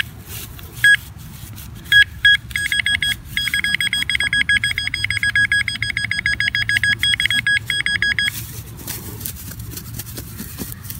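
Handheld metal-detecting pinpointer probe beeping as it is pushed through grass: a few short high beeps in the first couple of seconds, then a fast, steady run of beeps for about six seconds that stops shortly before the end. The rapid beeping marks the probe sitting right over a buried metal target.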